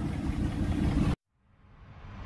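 A dump truck's engine rumbles as it pulls away. The sound cuts off suddenly about a second in, and after a brief silence music starts to fade in near the end.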